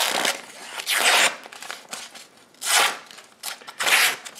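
A freshly sharpened kitchen knife slicing through a sheet of lined notebook paper, with paper rustling: about four short slicing strokes, the blade now cutting cleanly through the paper.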